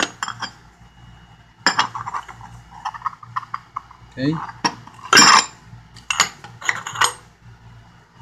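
Metal cup-type oil filter wrenches clinking and clanking against each other and other tools in a metal toolbox drawer as they are picked up and set down: a scatter of sharp metallic knocks, the loudest a little past halfway.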